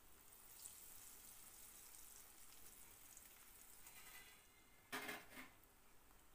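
Faint sizzle of raw banana slices shallow-frying in oil in a nonstick pan, with a brief clatter about five seconds in.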